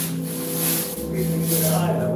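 Background music with sustained tones.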